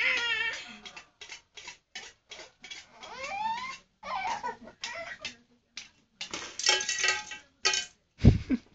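Toddlers babbling and squealing in short bursts, one rising squeal about three seconds in, with light knocks and clinks of a metal bowl they are handling.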